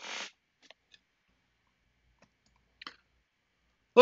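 A short rustle, then a few faint, scattered clicks and a brief click near the end, with near silence between: small handling noises at a computer desk.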